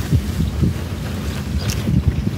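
Wind buffeting the microphone of a camera mounted on a mountain bike riding over rough dirt and grass, a steady low rumble broken by several sharp knocks and rattles as the bike jolts over the ground.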